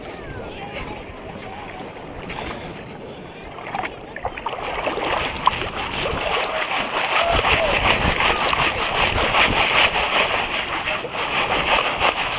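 A plastic mesh sifting basket is shaken back and forth in shallow water, sifting sand and gravel, with water sloshing and splashing through the mesh in quick rhythmic strokes. It starts about four seconds in and is loudest in the second half. Faint voices can be heard early on.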